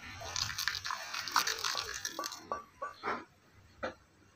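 A serving spoon working thick, wet lentil curry in a ceramic plate. For about two and a half seconds there is wet slopping and scraping with small clinks, then four or five separate clinks of the spoon on the plate.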